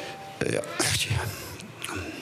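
A man's voice in short, broken bursts: a cluster starting about half a second in and a brief one near the end.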